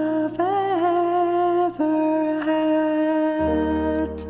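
Women's choir humming long held closing notes over a sustained accompaniment chord. The chord changes to a lower one near the end as the song closes.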